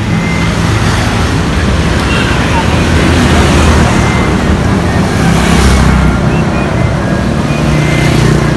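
A motor vehicle's engine running with a steady low rumble and hiss, growing louder around the middle and easing near the end.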